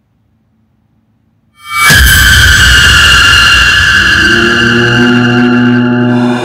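Near silence, then a sudden loud horror-film music stinger about a second and a half in: a crashing hit whose high tones ring on, over a low drone, with deeper held notes coming in near the end.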